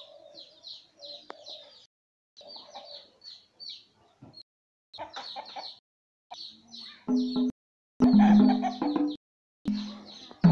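Chickens clucking in short repeated runs, then about seven seconds in, loud music with a held, stepping melody starts up over them.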